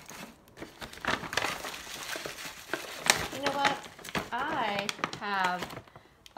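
Paper gift bag crinkling and rustling as hands pack items into it, for the first three seconds or so. Near the end a woman's voice makes a few short wordless sounds.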